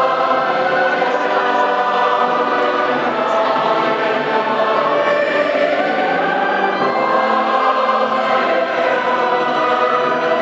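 Church choir singing a hymn, many voices holding sustained chords.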